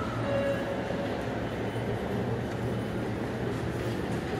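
Steady low rumble and hum of an underground train-station concourse, with no sudden sounds standing out.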